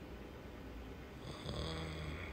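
A man's short, low, throaty vocal sound, snore-like, starting about a second in and lasting under a second, picked up close by a lapel microphone over faint room tone.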